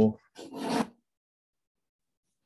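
The end of a man's spoken word, then a short raspy noise about half a second long, then silence.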